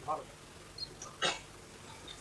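A pause in a man's lecture into a microphone: his voice trails off, then a short breath near the microphone about a second in.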